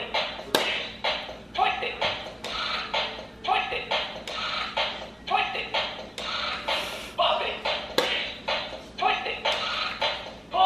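Bop It handheld electronic game calling out its commands in its recorded voice over a steady beat, one short call about every half to three-quarters of a second, with sharp clicks as its handles are bopped, twisted and pulled.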